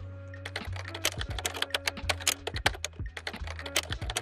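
Computer keyboard typing: a rapid, uneven run of key clicks, several a second.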